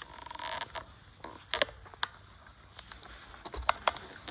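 Bicycle creaking and clicking as it pulls away from a standstill: a rough creak in the first second, then scattered sharp clicks, two close together near the end.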